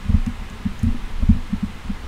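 A quick, irregular run of low, dull thumps, about eight in two seconds.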